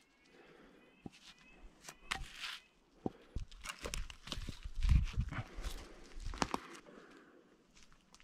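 Footsteps crunching over twigs and leaf litter on a forest floor, with scattered light knocks of wood sections being handled, busiest in the second half.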